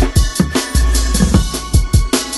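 Instrumental hip-hop beat with no vocals: hard kick drum hits several times a second over busy hi-hats, with a long deep bass note held for about half a second midway.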